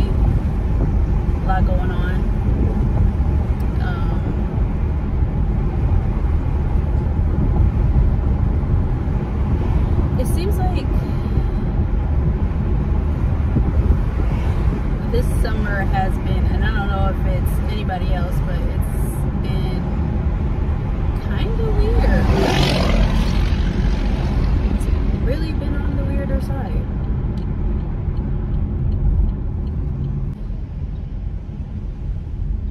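Steady low rumble of road and engine noise inside a moving car's cabin, with a louder swell about two-thirds of the way through.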